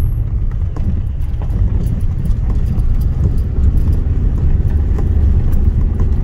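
A car driving over a rough, broken road whose old asphalt has been scraped off. It gives a steady low rumble with many irregular knocks and clatters from stones and bumps under the tyres.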